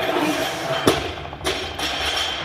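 Background music, with two sharp knocks about a second in, half a second apart.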